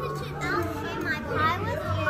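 Children's voices chattering over one another in the background, with no clear words.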